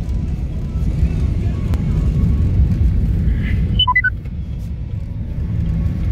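Steady low road and engine rumble of a car being driven, heard from inside the cabin. A quick string of four short electronic beeps comes about four seconds in.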